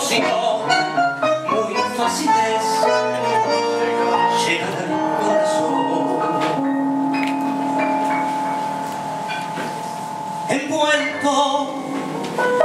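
Tango trio of piano, bandoneón and guitar playing an instrumental passage: struck piano notes over the ensemble at first, then a long held chord for several seconds before the playing picks up again near the end.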